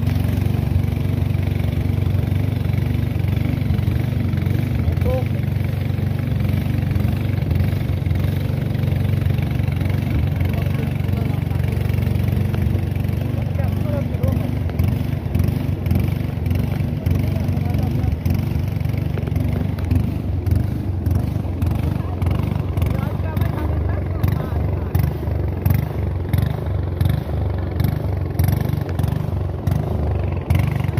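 Small boat's motor running steadily underway with a constant low drone. Over the last ten seconds or so, irregular gusts of noise break in over it.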